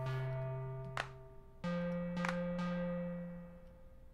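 Playback of a song's soloed production stems: a held bass note that steps up to a higher note about one and a half seconds in and fades near the end, with a few sharp clap hits over it.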